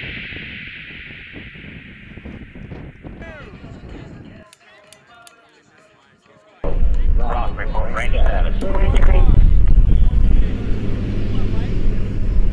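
Background music fades away, and after a short lull, wind buffeting the microphone comes in suddenly as a loud, low rumble, with people talking faintly behind it.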